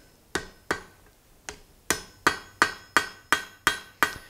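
Hand hammer tapping white-hot steel on an anvil to set a forge weld, with light blows rather than heavy ones, each giving a short metallic ring. Two taps, a pause of about a second, then a steady run of about six taps at roughly three a second.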